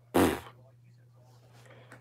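A short scoffing puff of air blown through pursed lips, a 'pfft' about a third of a second long, followed by quiet room tone.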